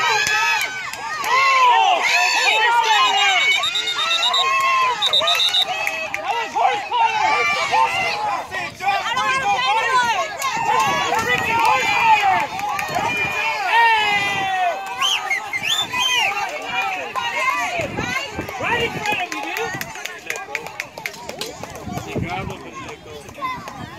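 Sideline spectators shouting and cheering, many voices overlapping loudly, dying down somewhat near the end.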